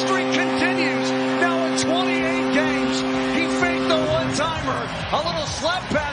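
Arena goal horn sounding a steady multi-note chord over a cheering crowd, celebrating a home-team goal; the horn cuts off about four seconds in while the crowd cheering goes on.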